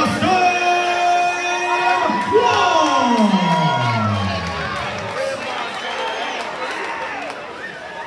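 A ring announcer's amplified voice draws out a fighter's name. It is one long held note, then a long call that falls in pitch, with a crowd cheering throughout.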